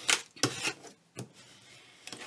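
Paper and card rustling with a few light taps as pieces are handled, mostly in the first second, then only faint handling.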